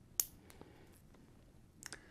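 Small clicks from a Nixon wristwatch being handled while its time is set: one sharp click shortly after the start, then a few faint clicks near the end, with quiet between.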